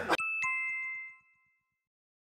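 Two-note chime sound effect: a higher ding, then a lower one about a quarter second later, both ringing out and fading within about a second and a half.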